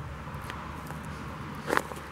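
Footsteps crunching softly on wood-chip mulch over a low outdoor rumble, with a single click about half a second in and a brief short sound near the end.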